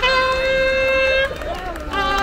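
Marching band horns holding a long, steady note that breaks off a little past halfway, followed by a brief wavering passage and a second held note near the end.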